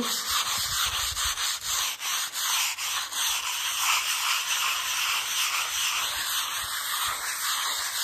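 Sheet of sandpaper rubbed by hand back and forth over cured acrylic wall putty, a steady scratchy rasp in quick, even strokes. The putty has set hard and is only half-hard to sand.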